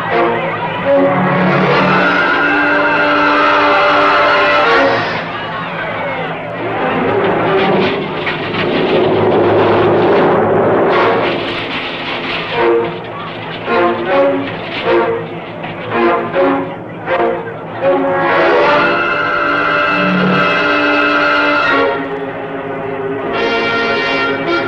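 Orchestral film score led by loud brass: held chords near the start and again near the end, with short, separate stabbed notes in between.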